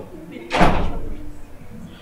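A door banging shut about half a second in: a single loud thud with a short echo in the room.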